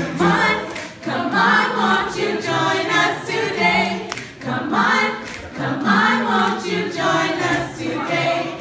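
Small mixed-voice gospel choir singing a cappella in parts, in phrases that swell and fall.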